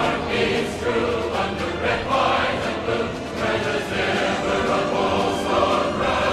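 Music with a choir singing, steady throughout.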